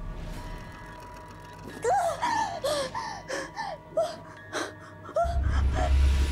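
A woman's voice making a string of short whimpering moans, each rising then falling in pitch, over a faint steady music tone; a deep low hum comes in about five seconds in.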